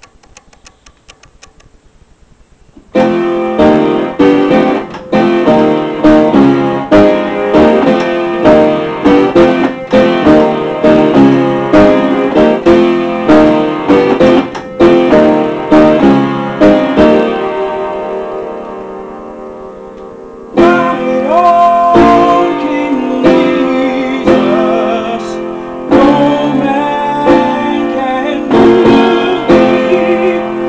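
Upright piano playing a spiritual in full, loud chords, starting about three seconds in after a few quiet seconds. Past the middle a long chord rings and fades away, then the playing starts again.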